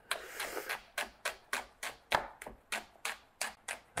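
Chef's knife slicing shallots on a wooden end-grain chopping board: even knife taps, about three or four a second.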